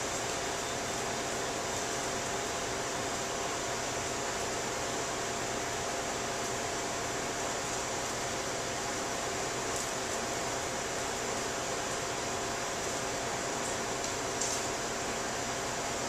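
Steady room noise: an even hiss with a faint hum of a few steady tones, and a couple of faint light ticks about ten seconds in and near the end.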